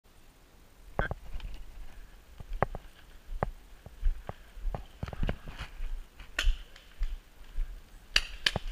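Paintball markers firing in the woods: scattered single sharp pops at irregular intervals, some close and loud, others fainter, over a low rumble of movement.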